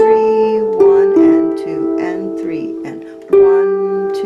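Lever harp playing a slow waltz melody in E minor: single plucked notes and note pairs, each left to ring and fade, with a fresh pluck about a second in and another near the end.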